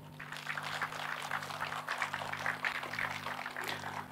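Audience applauding: many hands clapping in a light, dense patter that begins just after a brief lull, with a steady low hum from the sound system underneath.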